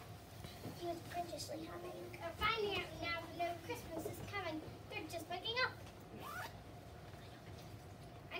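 Children's voices talking quietly in short, scattered bits, with the words not made out.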